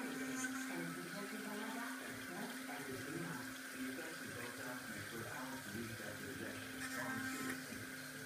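Electric toothbrush motor humming steadily. It stops about a second and a half in and runs again from about five and a half to seven and a half seconds.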